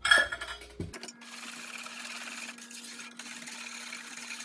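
Wire whisk stirring a thick eggnog mixture of egg yolks and cream in a ceramic mixing bowl: a sharp clink right at the start, then a steady wet scraping swish.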